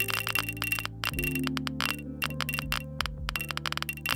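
Soundtrack of a reactor simulation animation: a fast, irregular patter of small chime-like clicks over a steady low held tone.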